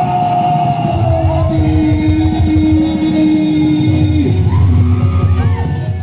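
Live band music from a stage band with electric guitar and keyboard: long held notes over a heavy, steady low beat. It begins to fade out at the very end.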